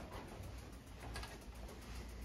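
Quiet low rumble with soft rustling from a hand-held camera being carried while walking.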